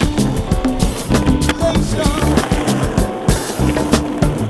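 Skateboard wheels rolling over stone paving and the board clacking on a stone ledge, heard under music.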